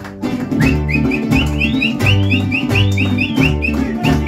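Mariachi band playing an instrumental passage: a deep plucked bass line and strummed guitars keep the rhythm, and about half a second in a quick high melody of short repeated notes comes in over them.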